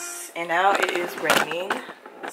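A girl's voice speaking, starting about half a second in.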